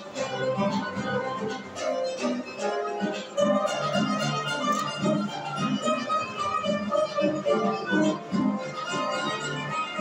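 Live folk-instrument ensemble with piano playing a brisk dance toccata: a kamancha (bowed spike fiddle) and a plucked lute carry the melody over upright piano and a drum keeping a steady beat.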